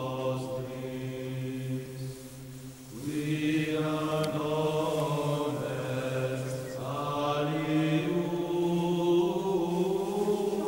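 Chant-style music: voices holding long, steady notes, moving to new notes about three and seven seconds in.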